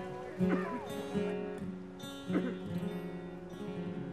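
Acoustic guitar strumming chords, with three strums a second or so apart and the chords left ringing and slowly fading between them.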